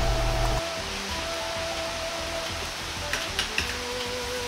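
Water boiling hard in a wok, a steady bubbling rush, under soft background music with long held notes. A few light clicks a little after three seconds in.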